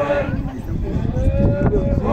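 A group of voices chanting in long held notes. One note ends just after the start, a shorter, quieter note is held near the middle, and the next note begins right at the end.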